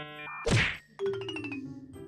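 Comedy sound effects edited into the video: a loud whack about half a second in, then a tone that slides down with rapid ticking and fades out, over faint background music.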